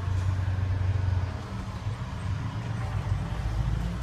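Diesel engine of a 2016 Hino 338 truck idling, heard inside the cab as a steady low hum that turns rougher and more uneven about a second and a half in.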